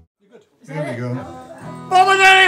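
A short gap of near silence, then about half a second in a voice starts talking in the room, with some acoustic guitar.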